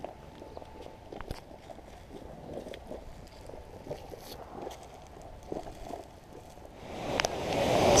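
A geothermal hot pool bubbling, heard as faint, irregular small pops and crackles over a soft hiss. Near the end a louder rushing noise swells up.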